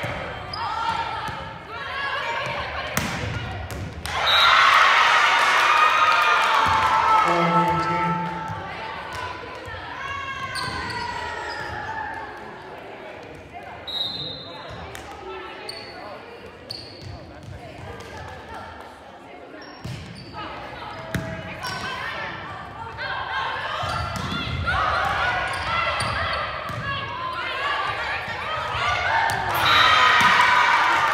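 Indoor volleyball rally on a hardwood gym court: sharp ball contacts and thuds with short sneaker squeaks, under shouting from players and spectators. The voices are loudest about four to eight seconds in and again near the end.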